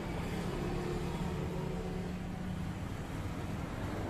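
A motor vehicle engine running in the background: a steady low drone with a faint held tone that fades about three seconds in.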